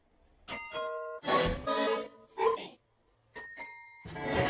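Heavily effects-processed, distorted audio: a run of short bursts of pitched, chime-like and warbling sounds, broken by a brief silence late on and followed by a few thin steady tones.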